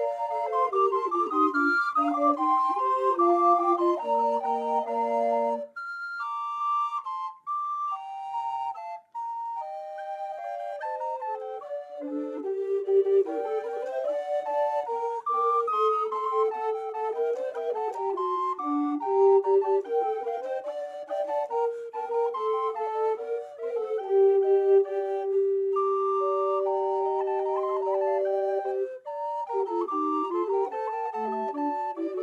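Ensemble of eight recorders, from small treble sizes down to long bass recorders, playing a multi-part arrangement of a folk-tune melody. About six seconds in, the texture thins for a few seconds to a few high parts before the full ensemble returns. Near the end, a low part holds one long note under the moving upper parts.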